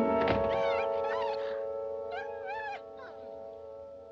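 Orchestral film score holding a sustained chord. A thump comes just after the start, then two bursts of high cries from a dog, a collie, each rising and falling in pitch, before the music fades down.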